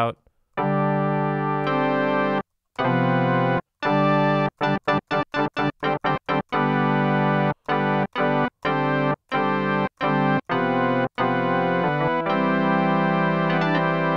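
Dexed software synthesizer, a Yamaha DX7 emulation, playing its FM 'Rock Organ' preset. Organ chords are held and cut off sharply, then a quick run of short stabs at about five per second follows. The passage ends on a long held chord.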